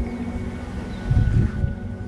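Background music with steady held tones, and a brief low rumble about a second in.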